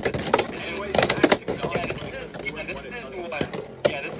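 Two spinning Beyblade Burst tops clashing in a plastic stadium: sharp plastic clacks as they hit each other and the stadium wall, a pair close together about a second in and more near the end, with voices underneath.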